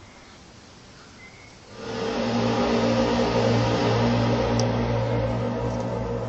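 A deep, steady, horn-like drone in several pitched layers. It swells in about two seconds in out of a quiet background and then holds. It is the kind of sound reported as an unexplained 'sky trumpet'.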